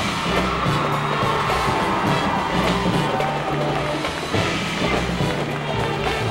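High school marching band playing a swing arrangement, with low brass notes and marching drums, as a crowd cheers over it.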